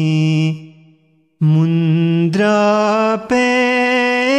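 Male voice singing a ginan, an Ismaili devotional hymn, in long held notes. A note dies away about half a second in; after a short pause a new phrase begins and climbs in two steps.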